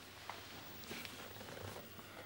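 Faint rustling and a few light clicks of a picture frame and papers being handled, over a low steady hum.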